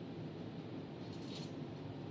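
Low, steady room background noise with one brief soft hiss a little past a second in.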